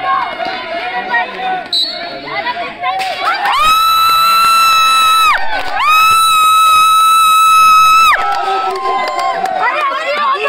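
Referee's whistle blown in two long, steady blasts of about two seconds each, the first starting about three and a half seconds in. Crowd voices and shouting are heard around them.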